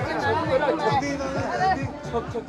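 Several men talking close by at once, over background music.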